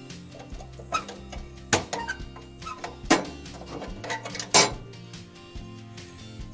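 Pliers working the edge of a knockout hole in a steel meter box: several sharp metal clicks and snaps, the loudest about three-quarters of the way through, over steady background music.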